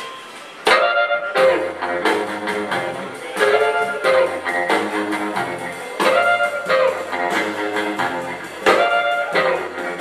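Live rockabilly trio starting a song: electric archtop guitar, strummed acoustic guitar and upright bass kick in sharply about a second in, with strong accents about every two and a half seconds. No singing yet.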